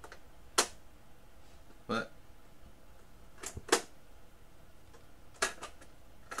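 Sharp clicks from the keys and controls of a Crosley CT200 portable cassette player being worked by hand: about half a dozen separate clicks, two close together near the middle and a quick pair near the end.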